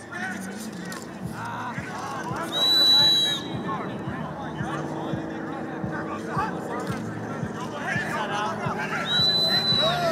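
A coach's whistle blown twice, each a steady high blast of about a second: the first, the loudest sound, about two and a half seconds in, the second near the end. Between them is a background of many voices talking and calling out.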